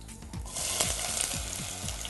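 Chopped onions dropped into hot oil in a pot, sizzling up loudly about half a second in and frying with a steady hiss.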